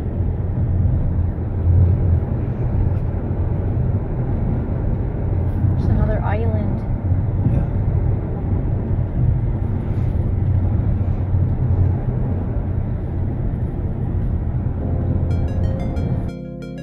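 Car cabin road noise while driving at highway speed: a steady low rumble of tyres and engine heard from inside the car. Music of mallet-percussion notes comes in near the end.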